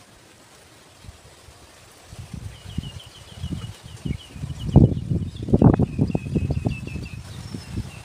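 A bird calling in two runs of quick, evenly repeated high chirps, over irregular low rumbling gusts on the microphone that grow louder from about two seconds in.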